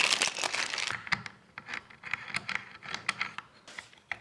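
Clear plastic parts bag crinkling for about a second, then scattered light clicks and taps of plastic parts as a replacement handle is fitted onto a Festool Domino joiner.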